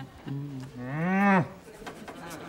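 A man humming a tune to himself with his mouth closed: a short low note, then a longer, louder note that swoops up and back down and stops about a second and a half in.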